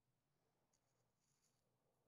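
Near silence: room tone with a faint low hum, and a very faint, brief scratching sound about a second in.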